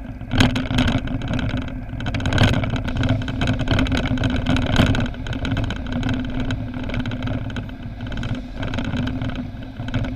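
Car driving at road speed, heard from inside the cabin: steady engine and tyre rumble with a few sharp knocks or rattles, the loudest about half a second in.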